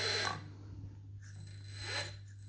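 The hydraulic system of an RC teleloader lowering its boom. There is a steady high-pitched whine from the electric hydraulic pump, which drops out for about a second in the middle. Two short rushes of noise come at the start and near the end.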